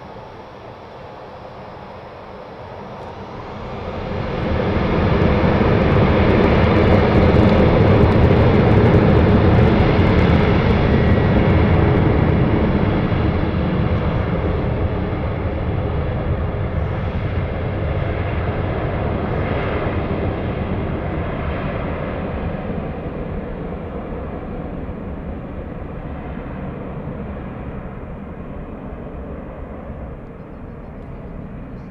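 Boeing 737-800 jet engines spooling up to takeoff thrust about four seconds in, then running loud through the takeoff roll and slowly fading as the aircraft accelerates away down the runway.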